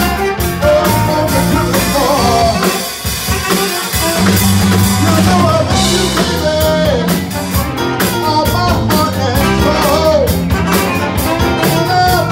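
Live soul-blues band playing: horn section of saxophone and trombone, electric guitars, bass and drum kit, with a lead melody bending in pitch over the top. The band thins out briefly about three seconds in, then comes back in full.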